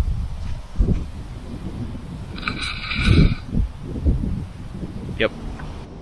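Wind buffeting the camera microphone in irregular low gusts, strongest about a second in and about halfway through, with a brief higher-pitched sound just before the second gust.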